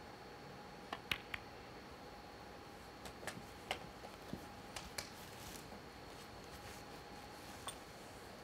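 Snooker balls clicking: the cue strikes the cue ball and balls knock together about a second in, with three sharp clicks close together. A few lighter ball clicks follow a couple of seconds later, over a faint steady hum.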